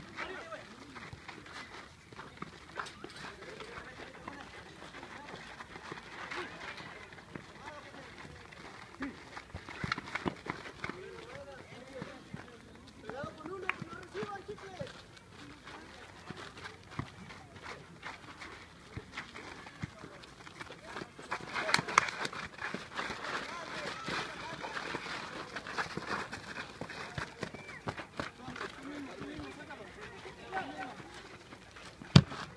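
Shouting voices of players and onlookers at an outdoor small-sided football match, with scattered sharp knocks of the ball being kicked; the loudest burst of shouting comes about two-thirds of the way in.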